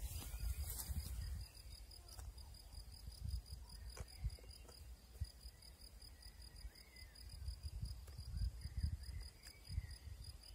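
Insect chirping in a fast, even, high-pitched pulse, pausing briefly partway through, under wind rumbling on the microphone. The brush cutter's engine is not running.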